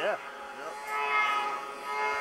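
SXR 700 snowmobile engine running hard through deep powder: a steady droning note that grows louder about halfway in as the sled comes closer. It runs through a factory exhaust can that has been drilled out.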